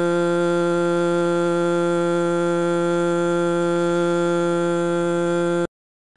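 Human vocal cords vibrating in a sustained vowel held at one steady low-mid pitch, a rich buzzy tone with many overtones that cuts off suddenly near the end.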